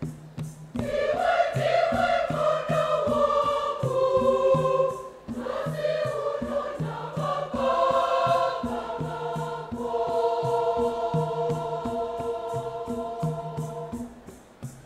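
Choir singing a Shona hymn in held harmony, coming in about a second in, breaking briefly near the middle and dropping away near the end. Under it runs a steady beat of hosho gourd shakers, about three shakes a second, with a low drum.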